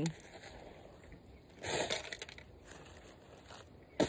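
Fertilizer being scooped from a metal pan and scattered onto garden soil: one short rustling scrape about a second and a half in, then a few faint scatters.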